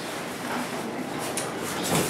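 Kitchen faucet running into a stainless steel sink, a steady hiss of water as a cloth is wetted to wipe jar rims.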